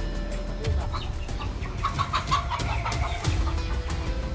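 A chicken clucking, a short run of calls around the middle, over background music.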